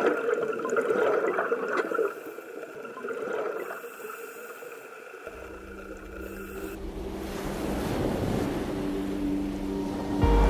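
Muffled underwater ambience with a steady tone and a swell in the first two seconds, then a low rumble and a hiss of wind and surf that rises toward the end.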